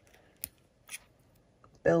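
Two small sharp clicks about half a second apart, with a few fainter ticks: fine chain nose pliers closing on thin copper-plated wire while the wire wraps are pushed in tight.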